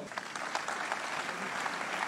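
A congregation applauding in a large hall: many hands clapping steadily together.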